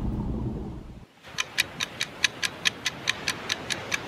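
Rushing, churning water fading away over the first second. Then a fast, even ticking sets in, about six sharp ticks a second.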